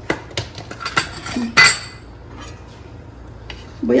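A spoon clinks and knocks a few times against a large aluminium cooking pot while offal is added to the broth. The loudest clink comes about one and a half seconds in, and it is quieter after that.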